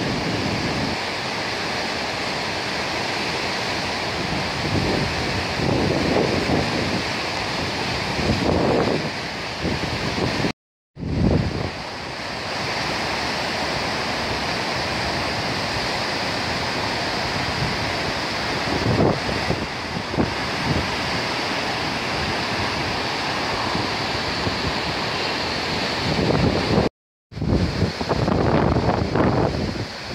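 The River Ogmore in flood rushing and churning through the arch of an old stone bridge: a loud, steady noise of fast water. Twice, about a third of the way in and near the end, the sound drops out for a split second.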